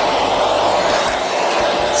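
Hand-held hair dryer running steadily on high, blowing onto wet permed hair to dry it fully: a constant rush of air with a steady whirring tone.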